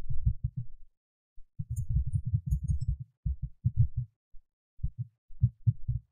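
Computer keyboard keys pressed in quick runs, heard mostly as dull low thuds with a few faint clicks, as code is deleted and retyped. The densest run comes about two seconds in, with scattered single strokes near the end.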